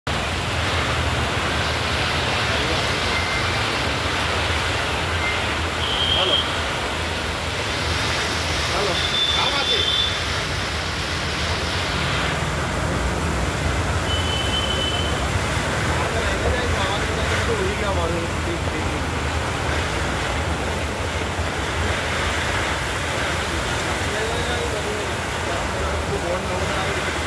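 Heavy rain pouring down steadily onto a flooded street, with cars driving slowly through the standing water.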